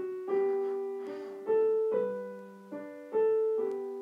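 Piano playing a slow passage in G major one note at a time, each struck note ringing on and fading while the next sounds over it, low held notes under a slow upper line.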